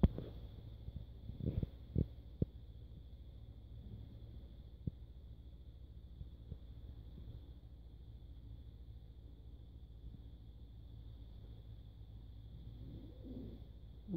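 Quiet background: a steady low rumble with a faint steady high-pitched tone, and a few soft clicks in the first few seconds.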